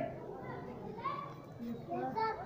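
Faint children's voices in the background, a couple of brief snatches of speech with no clear words.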